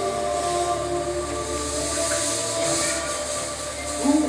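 Stage fog machine hissing as it puffs out a cloud of smoke, over a soft, sustained music drone.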